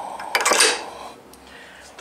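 Light metallic clinks and rubbing about half a second in, from a hand handling the chrome docking-station post and bolt, followed by quieter handling noise.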